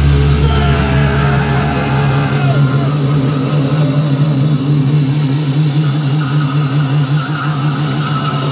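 Thrash metal song ending on a held, distorted chord. The bass drops out about two seconds in, leaving a steady, wavering low drone ringing on.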